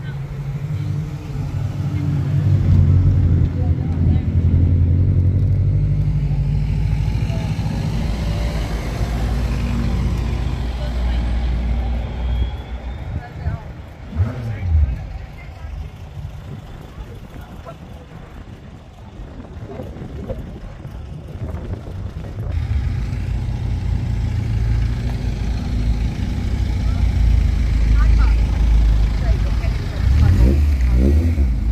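A car engine running steadily at low revs, a deep rumble that is loudest in the first part and again near the end, weaker in the middle.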